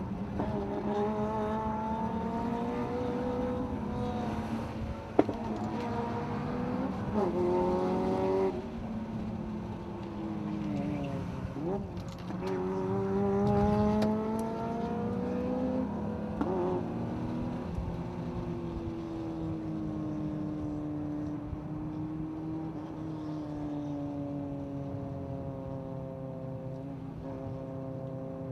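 BMW E36 M3 straight-six engine heard from inside the cabin, its revs climbing and dropping several times with throttle and shifts. There is a sharp click about five seconds in. Over the second half the revs ease slowly down as the car coasts.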